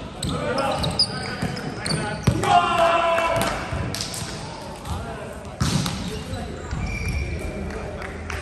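Indoor volleyball in a gym: a few sharp thumps of the ball being hit and landing, shoe squeaks on the hardwood floor, and players calling out, with one loud shout about two and a half seconds in, all echoing in the large hall.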